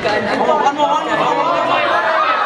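Several voices talking over one another: chatter, with no music.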